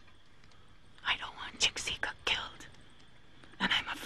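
Hushed, whispered speech: a short whispered phrase about a second in and another starting near the end, with near quiet between.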